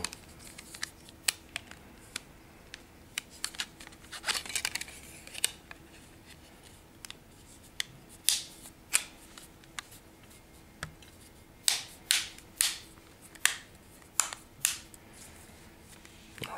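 Samsung Galaxy Nexus's plastic battery cover being pressed back onto the phone, its clips snapping into place in a series of sharp clicks, most of them in the second half.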